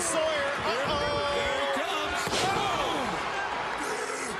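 A wrestler is slammed onto the ring mat, a loud thud about two seconds in, following a long shout.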